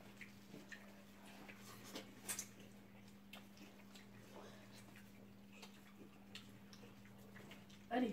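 Faint sounds of people eating with their hands: scattered small clicks of lip smacks and chewing over a steady low hum, with a brief murmur about four seconds in.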